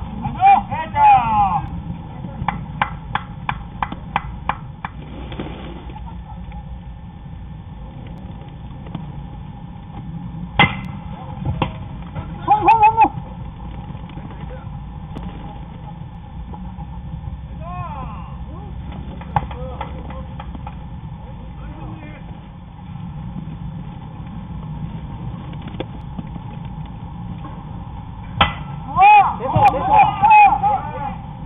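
Players' shouts carrying across a baseball field: a few short calls spread through, the loudest near the start, about halfway and near the end, over a steady low rumble. There is a quick run of sharp clicks early on and a single click about a third of the way in.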